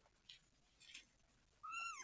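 A kitten gives one short, high meow that falls in pitch near the end. Before it is near silence with a couple of faint soft sounds.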